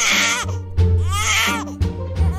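A baby crying in two wailing cries: a short one at the start and a longer one about a second in, over background music with steady low notes.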